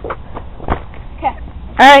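Rustling and faint knocks from a handheld camera being moved, with one sharper knock a little under a second in. A boy's voice comes in loudly near the end.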